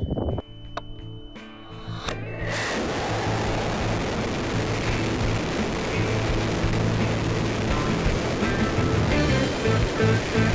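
Background music, joined about two seconds in by a steady rushing noise recorded by the high-power rocket's onboard camera as the rocket climbs: air rushing past the airframe in flight.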